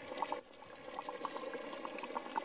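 Liquid bubbling at a boil in a cooking pot, a dense run of small pops and crackles growing louder.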